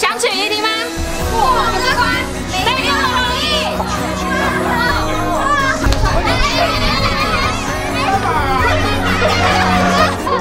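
Excited, high-pitched shouting and laughter from a small group of young adults playing a party game, with a woman calling out over a handheld microphone. Background music with steady held notes plays underneath.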